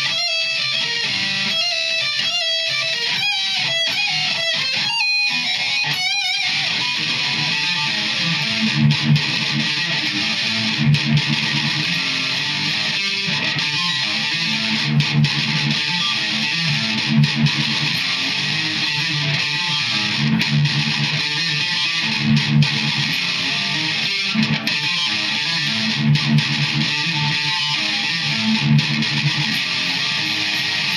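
Unaccompanied electric guitar, a Stratocaster-style solid-body, played through an amp. For about the first six seconds it plays separate picked notes, then moves into a dense, sustained rhythm part with a low chugging figure that returns about every two seconds.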